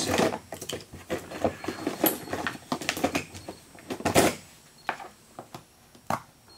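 Handling noise at a wooden workbench: a string of small, irregular clicks and taps as pliers and small parts are picked up and set down, loudest about four seconds in.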